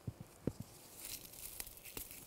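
Faint rustling and crackling of phlox leaves and stems as a young shoot is picked off the plant by hand, with a few soft knocks in the first half-second.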